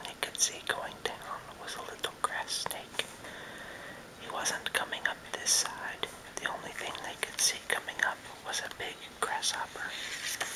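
A man whispering, reading a story aloud in short phrases, with a brief pause about three seconds in.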